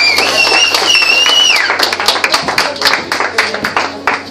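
Small audience clapping after a song, irregular claps throughout, with a loud whistled cheer held for the first couple of seconds that steps up in pitch and then drops away.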